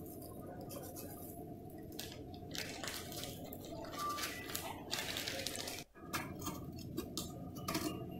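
Faint crinkling of a plastic bag and light gritty rustles as salt is shaken out onto crushed ice, over a steady low hum. The sound drops out briefly about six seconds in.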